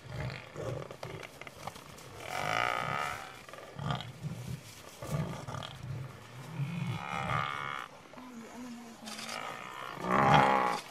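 African buffalo bellowing and lowing, mixed with lion growls, in a series of separate calls; the loudest is a longer, higher call about two to three seconds in, with deeper calls later on.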